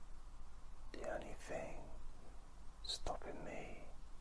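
A man whispering two short phrases close to the microphone, about a second and about three seconds in, over a low steady hum.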